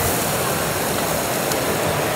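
Steady sizzle and hiss of white wine cooking down over shallots, garlic and bacon in a hot pot, its alcohol boiling off before the shrimp go in.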